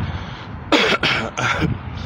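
A person clearing their throat: three or four short, harsh bursts starting a little under a second in, over a steady outdoor background hiss.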